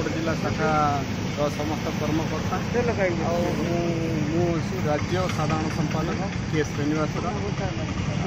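A man speaking steadily into reporters' microphones, over a constant low background rumble.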